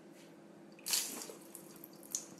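Milk poured from a glass splashing onto a hard floor. The splash starts suddenly about a second in and runs on unevenly as the stream keeps hitting the floor.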